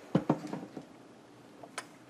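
Two quick knocks right at the start, followed by a few softer taps and one light click near the end: hands handling things on a craft table.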